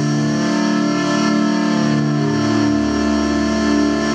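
Live rock band holding the song's closing chord: keyboard and guitar tones ringing steadily, with a low bass note that swells and shifts about once a second.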